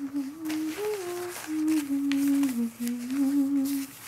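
A person humming a slow melody, the pitch moving in small steps up and down, with a few faint rustles of paper.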